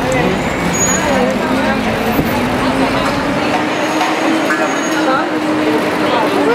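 City street traffic: a motor vehicle engine hums steadily, slowly rising in pitch, with a deep rumble that drops away about halfway through. Scattered voices of a crowd call out over it.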